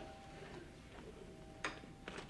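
Near-quiet room tone with a faint steady tone that fades out about a second in, then a single sharp click near the end.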